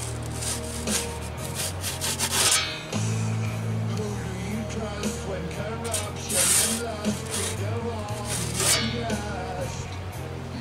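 Metal pizza peel scraping under the pizza inside a KettlePizza oven on a Weber kettle grill as the pizza is turned, in several short scrapes, most of them in the first two and a half seconds, with more later on. Background music plays under it.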